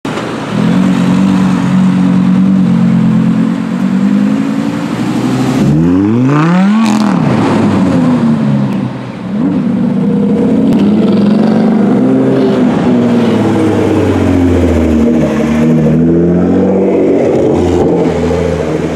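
Sports car engines running and revving in street traffic: a steady engine note, a sharp rev that climbs and drops about six seconds in, then engine notes rising and falling in pitch as the cars pull away.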